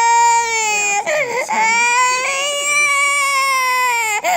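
A young girl crying loudly in long, high wails, with a short broken sob about a second in, as a sample is taken from her for a medical test.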